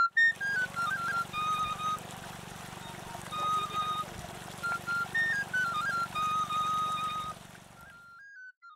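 Steady rush of water pouring from an irrigation pipe onto the ground, under a flute melody.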